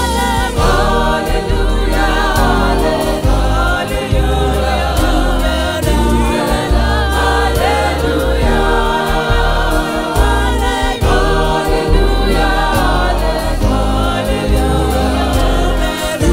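Gospel choir singing a Sesotho hymn in harmony with a live band of drum kit, bass and keyboards.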